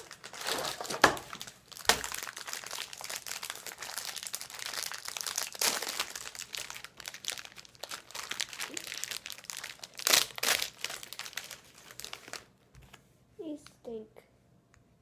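Plastic wrapper of a sleeve of sesame water crackers crinkling and crackling as it is worked open and pulled out of its cardboard box, with a few louder crackles. The crinkling stops about a second and a half before the end.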